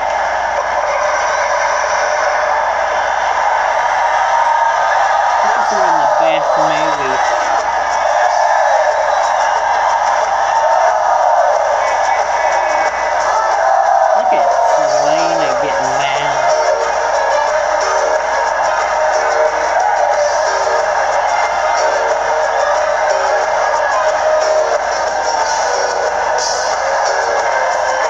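A film soundtrack of music and voices playing from a television, picked up through the room by a phone and sounding thin, with a regular pulse in its second half.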